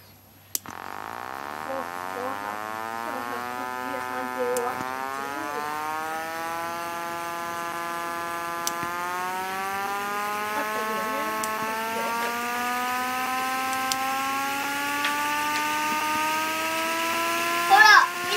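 Simulated tsurikake (nose-suspended traction motor) sound of a KuMoHa 40 electric car, played by an MP3 sound DCC decoder through a small speaker. The whine starts with a click about half a second in and climbs slowly in pitch, in step with the model's speed as it accelerates.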